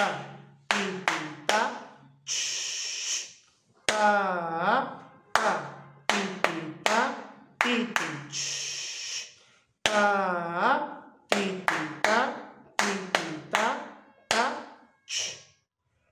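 A man chanting rhythm-reading syllables, short 'ta' and 'ti' sounds on an even beat, each falling in pitch, reading out a 2/4 rhythm exercise. Two longer 'shh' sounds, about two seconds in and about eight seconds in, mark the rests.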